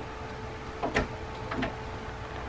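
Quiet room tone with a faint steady hum, broken by a single short click about halfway through.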